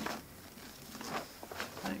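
Faint rustling of a thin protective wrapping sheet being peeled off a subwoofer cabinet, with a few light crinkles in the second half.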